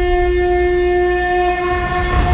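Trailer-style intro sound: a single sustained horn-like note held steady over a deep low rumble.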